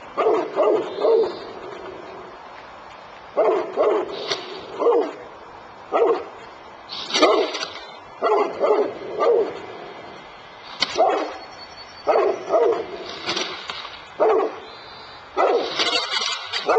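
Newfoundland dog barking repeatedly, in quick runs of two to four barks with short pauses between them.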